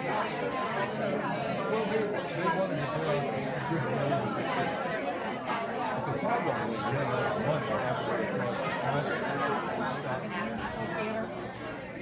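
Many people talking at once in pairs across a room, a steady din of overlapping chatter with no single voice standing out.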